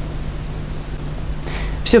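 Steady hiss of background noise with a faint low hum under it, and a man starts speaking near the end.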